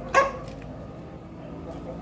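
A single short, loud animal call, bark-like and pitched, lasting about a quarter of a second shortly after the start, over a steady low hum.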